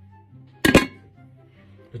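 Large metal cooking pot with a lid set down on a table: one short, sharp double knock about two-thirds of a second in, over faint background music.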